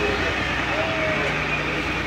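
A passenger ferry's engine drones steadily under the chatter of many passengers on board.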